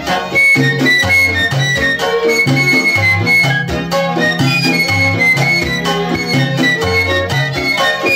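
Instrumental passage of a 1950s Cuban cha-cha-chá played by a charanga orchestra: a high flute melody of short notes over violins, piano and a steady bass line.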